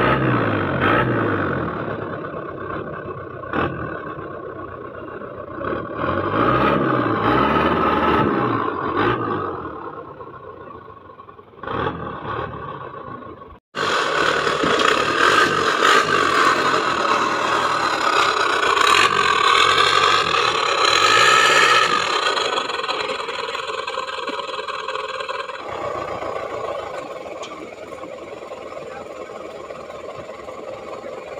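Off-road 4x4 engine revving up and down under load. About halfway through, the sound cuts out briefly and comes back louder, the engine note swinging up and down, then easing to a steadier run over the last few seconds.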